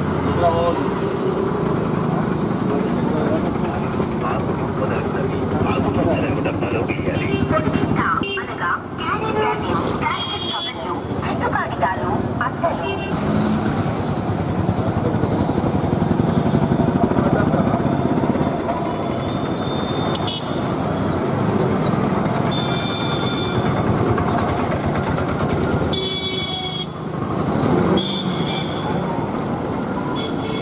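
Several people's voices talking at once by a busy street, with road traffic and motorcycles passing and a few short horn toots.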